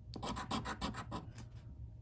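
A coin scratching the coating off a lottery scratch ticket: a quick run of short back-and-forth strokes that stops about a second and a half in.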